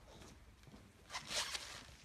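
A brief scratchy rasp about a second in, lasting under a second, from a hand working at a plastic watercolor palette, with fainter scuffs around it.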